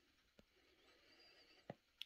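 Near silence: room tone with two faint clicks, one about half a second in and one near the end.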